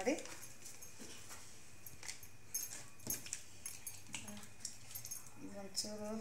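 Light crinkling and clicking of a plastic spice packet as masala powder is shaken and tapped out of it into an aluminium cooking pot, with a short voice near the end.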